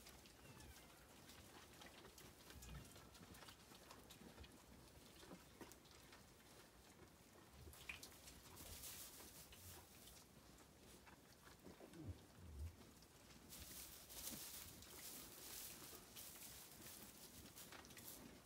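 Near silence: faint rustling of straw as Zwartbles ewes move and feed, in two stretches of a second or more, the second lasting several seconds near the end, with a few soft low thumps.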